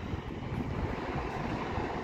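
Steady low rumble and hiss of a train approaching along the track in the distance.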